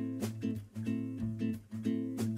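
Background music of an acoustic guitar strumming chords in a steady rhythm.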